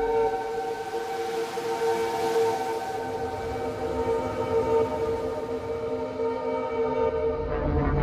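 A sustained siren-like wail of several steady held pitches. A deep rumble comes in under it near the end.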